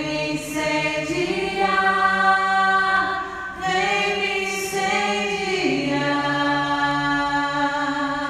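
A man's voice singing slowly and unaccompanied, holding long notes that change pitch every couple of seconds.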